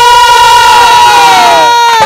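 A ragni singer and her chorus holding one long, loud high sung note together, the voices sliding down in pitch near the end.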